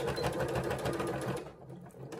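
Electric sewing machine running a straight top stitch through the layered fabric edge, a rapid even patter of needle strokes that eases off briefly near the end.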